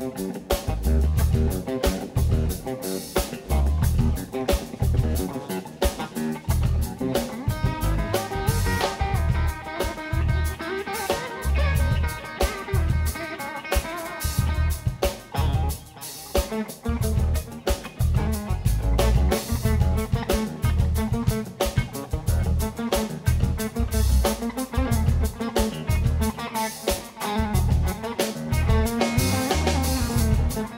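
Live blues-rock band: electric guitar soloing over bass and drum kit, with long held guitar notes from about eight to fifteen seconds in.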